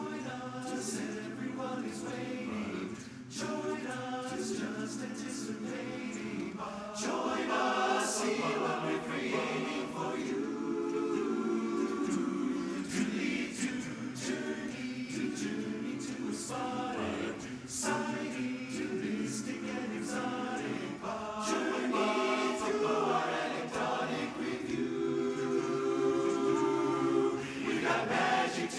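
Large men's barbershop chorus singing a cappella in close four-part harmony, held chords broken by short breaks, growing louder about eight seconds in.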